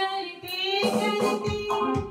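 Live Hindi film song: a woman singing, with electronic keyboard chords in an organ tone behind her.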